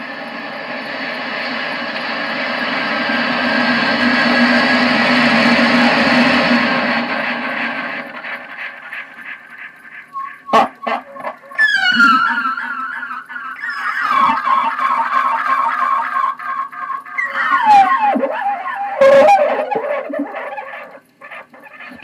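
Homemade tube tape delay, a Webcor Regent quarter-inch reel-to-reel with an extra playback head fed back through a mixer, smearing a short laugh into a wash of repeating echoes that swells to a peak about six seconds in and fades. From about ten seconds in, sharp knocks and warbling sounds come back again and again as tape echoes.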